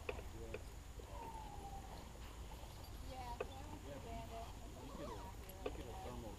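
Faint, distant voices talking over a steady low rumble, with a few sharp clicks.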